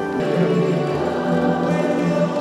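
Music: a choir singing in long held notes, moving to a new chord shortly after the start.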